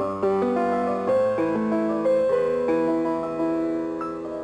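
Acoustic grand piano being played, its felt hammers striking the strings: a melody of struck notes, several a second, ringing over held lower notes.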